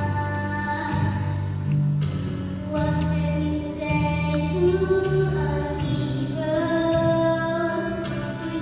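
Children's choir singing a slow song with musical accompaniment, holding long notes, with a woman's voice singing along.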